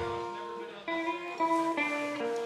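Electric guitar playing a melody of single picked notes on its own, a few notes a second, with no bass or drums under it.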